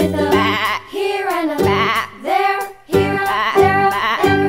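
Children's song backing music with three wavering sheep bleats. The backing drops away under the bleats and comes back about three seconds in.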